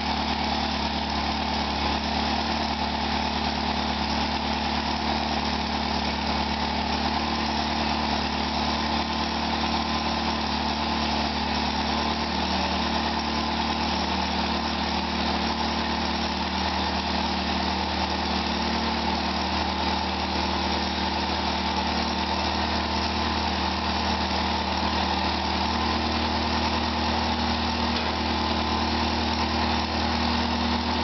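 Massey-Harris Pony tractor's small four-cylinder Continental flathead petrol engine idling steadily after a hand-crank start.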